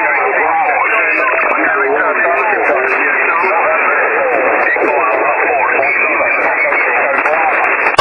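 Amateur radio pile-up heard through a single-sideband shortwave receiver: many stations calling at once over each other, a continuous jumble of overlapping voices squeezed into the narrow, tinny receiver passband. They are answering a DXpedition station's call for a partial callsign.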